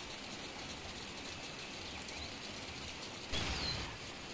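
Steady rain falling on wet foliage, an even soft hiss that grows louder and fuller about three seconds in.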